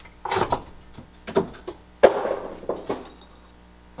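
Hard objects being knocked about and set down on a cluttered wooden workbench shelf: a few separate clattering knocks about a second apart, the sharpest about two seconds in.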